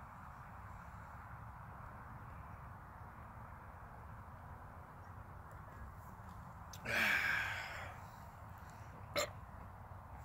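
A man sounds a loud, breathy gasp lasting about a second after chugging a 40 oz bottle of malt liquor, about seven seconds in, over faint steady outdoor background noise. A short sharp click follows near the end.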